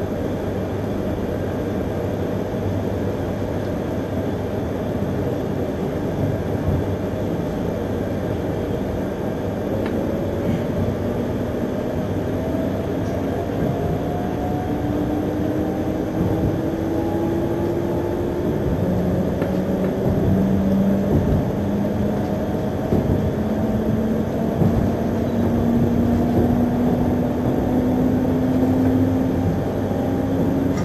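Shinkansen train running, heard from inside a passenger car: a steady rumble of wheels on rail, with the traction motors' whine climbing slowly and steadily in pitch from about a third of the way in as the train accelerates, and the sound growing a little louder.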